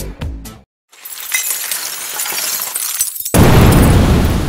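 Dance-style trailer background music cuts off in the first half-second. After a brief silence, a glass-shattering sound effect runs for about two seconds. A loud impact hit then lands near the end and rings on.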